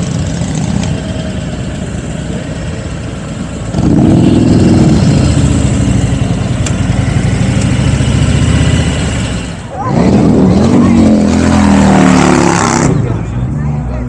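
Motorbike engine running as the bike rides along, opening up twice, about four seconds in and again near ten seconds, each time louder and rising in pitch. The engine sound falls away shortly before the end.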